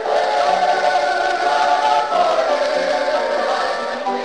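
Voices singing a gospel song in long held notes over musical accompaniment, from a live recording.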